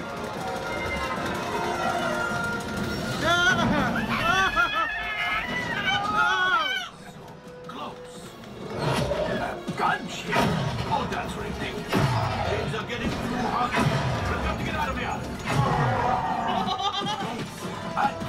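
Flight-simulator ride soundtrack: music under voices. After a short lull partway through, a series of sharp hits with quick downward-sweeping tones follows every second or two, the ship's cannons firing as the gunners keep shooting.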